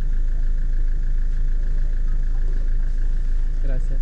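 Car engine idling, heard inside the cabin as a steady low rumble.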